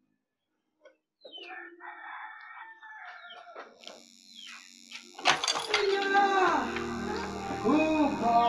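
Faint rustling and shuffling as a person gets up from a chair and moves away; from about five seconds in, much louder music with a voice takes over.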